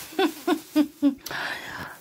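A few short, quiet vocal sounds from a woman in the first second, then a brief soft hiss of about half a second.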